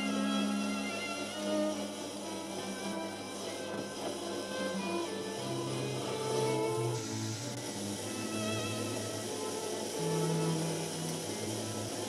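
Background classical string-trio music for violin, viola and cello, in slow held notes that step in pitch.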